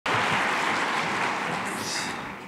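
Audience applauding steadily, easing off slightly toward the end.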